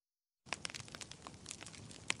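Dense crackling, crinkling noise with many sharp clicks, starting abruptly about half a second in after dead silence and lasting about two seconds.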